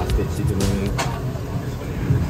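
Busy wine-bar room noise: a steady low rumble under murmured voices and faint background music, with a sharp click about a second in.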